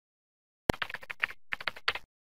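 Typing sound effect of computer keyboard keys: a quick run of clicks starting just under a second in, a brief break, then a second run.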